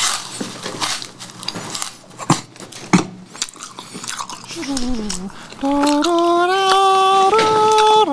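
A man humming a tune with his mouth closed, in long held notes that step up and down. It starts with a falling "mmm" about four and a half seconds in and gets louder about a second later. Before it come a few seconds of light clicks and taps as he works the candy.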